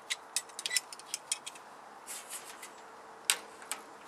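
Mole grips (locking pliers) being worked against an aluminium greenhouse frame: a quick run of light metallic clicks and ticks as the jaws are set and adjusted on the aluminium angle, then a few more, with one sharper click a little after three seconds as the grips are clamped on.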